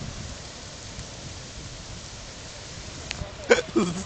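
Steady noise of a nearby wildfire burning through dry grass and trees, with two short voice sounds near the end.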